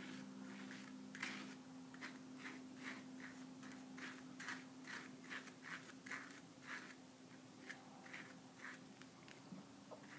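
Metal palette knife scraping and spreading oil paint on a paper sheet in short, faint strokes, about two a second, over a steady low hum.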